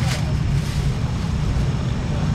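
Steady low rumble of outdoor street-market background noise, with a short sharp crackle right at the start.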